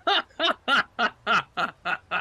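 A man laughing hard in a long run of short, evenly spaced bursts, about seven in two seconds, each falling in pitch.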